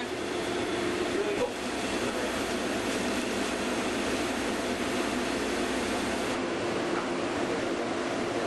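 Steady rushing noise of ventilation air blowing through a small equipment room, with faint voices underneath.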